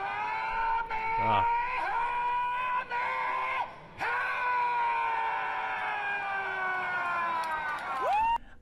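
A man's long, held Kamehameha battle yell shouted through a megaphone: two sustained screams with a short break about halfway, the pitch sagging slightly toward the end.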